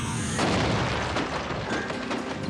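Cartoon crash effect of a wall being smashed through: a heavy boom with crumbling rubble about half a second in, fading over the next second, with action music underneath.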